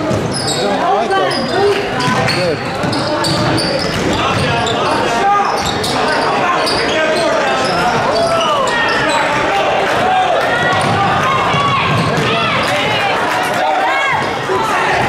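A basketball bouncing on the hardwood floor of a gymnasium during play, under a steady mix of players' and spectators' voices.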